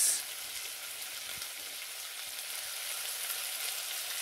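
Bacon rashers frying in a hot non-stick frying pan: a steady sizzle with fine crackling.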